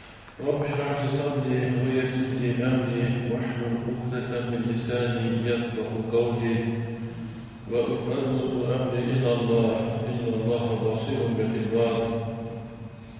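A man's voice chanting Arabic Quranic recitation in the melodic, drawn-out style, in two long sustained phrases, the second starting about eight seconds in.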